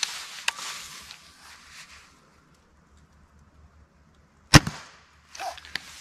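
A suppressed .30-calibre Hatsan Mod 130 QE break-barrel air rifle fires once, about four and a half seconds in, with a single sharp report. Before the shot there are a couple of clicks and some rustling as the rifle is handled, then it goes quiet.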